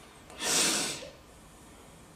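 A single sharp, noisy breath, loud and close, lasting about half a second, starting about half a second in.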